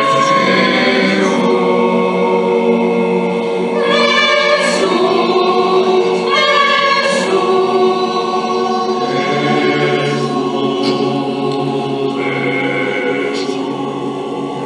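Mixed choir of men's and women's voices singing in held chords that move to new harmonies every few seconds.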